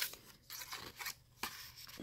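Soft rustling and scraping of paper and card as a hand lifts and shifts a stitched tag among the journal pages, in a few short scrapes.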